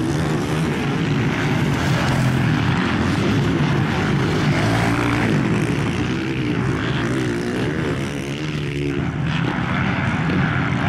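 Several 450-class motocross bikes running on the track together, their engines overlapping and revving up and down through the gears; one engine's pitch rises and falls clearly about seven to nine seconds in.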